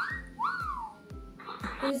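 Two quick whistle-like glides from a computer sound effect over background music with a steady beat of about three a second. The first glide rises and the second arches up and falls away, a feedback chime as the arithmetic program accepts a correct answer. A short hiss-like burst follows near the end.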